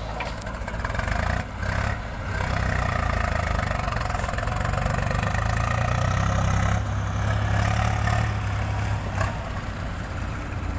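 Diesel engine of a JCB 3DX backhoe loader working under hydraulic load as it tips its bucket and swings the boom back to dig, growing louder a couple of seconds in, with a few short knocks near the beginning and the end.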